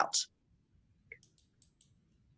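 After a short silence, four or five faint, sharp clicks come in quick succession, starting about a second in.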